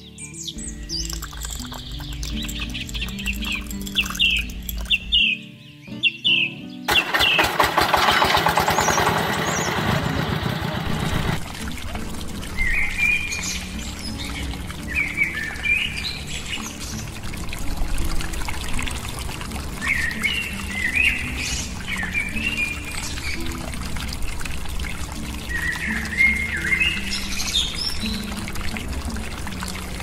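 Birds chirping in short repeated calls over light background music. About seven seconds in, a louder pouring rush lasts about four seconds.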